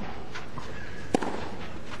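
A tennis ball struck once by a racket about a second in, one of a run of strikes about 1.3 s apart in a rally, over the steady background noise of the stadium.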